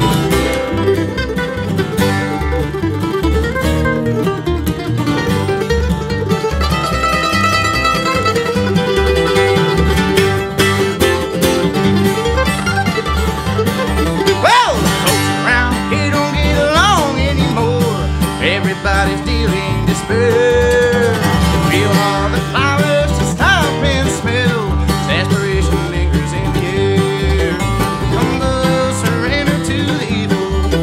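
Bluegrass trio playing live: flat-picked acoustic guitar and mandolin over an upright bass keeping a steady beat.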